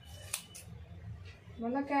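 Hairdressing scissors snipping through long hair: one sharp snip about a third of a second in, then a few fainter ones. A woman's voice starts near the end.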